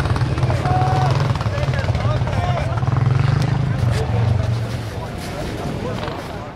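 A nearby engine running steadily with a low hum under voices, dropping away about five seconds in.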